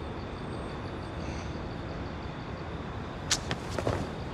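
Steady outdoor background ambience, a low even rumble like distant traffic, with a faint high regular pulsing over it. A short sharp click comes about three seconds in.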